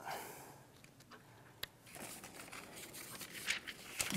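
Faint rustling and handling noises in a small room, with a short rustle right at the start and one sharp click about one and a half seconds in.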